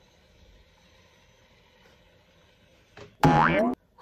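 A faint steady hum for about three seconds, then near the end a short, loud cry of surprise from a woman, an "oh!" that rises in pitch.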